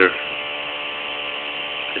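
Bedini SSG motor running with a steady buzz from its spinning magnet rotor and pulsed coil, pulse-charging a cellphone battery.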